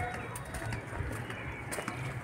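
A bird calling, with a few light clicks.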